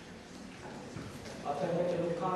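A man's voice through a lectern microphone, starting to speak again about a second and a half in after a quieter stretch of room noise with faint small knocks.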